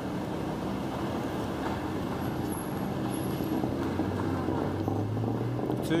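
City road traffic: vehicle engines running at a crossing, with one engine's low hum growing louder about four seconds in.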